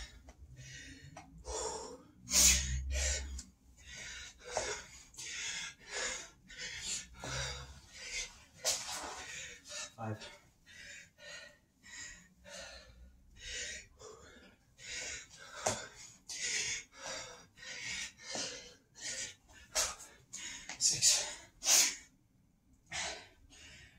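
A man breathing hard and fast through the mouth, with loud gasping breaths about once a second as he recovers from sets of burpees. The breaths are loudest about two seconds in and again near the end.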